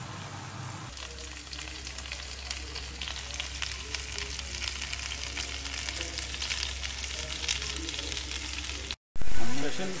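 Chicken pieces sizzling and crackling on a cast iron grill griddle, a dense steady frying crackle that starts about a second in. Near the end it breaks off briefly and a sudden, much louder sound follows.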